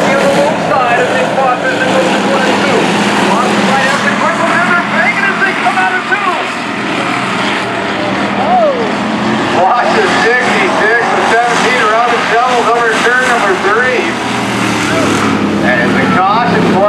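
Hobby stock race cars' engines running steadily as the field races around a dirt oval, with a voice over loudspeakers that becomes more prominent in the second half.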